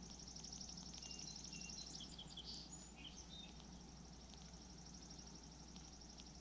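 Faint wild birdsong: a few short chirps and whistled notes from small birds about two to three seconds in, over a steady high, rapid pulsing sound.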